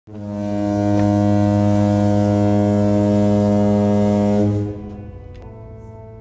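A deep, horn-like cinematic drone: one loud held low tone with many overtones swells in, holds steady, then falls away about four and a half seconds in to a quieter lingering tone.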